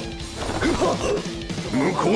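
Dramatic anime background music with crash-like impact sound effects from the battle, under a man's shouted line.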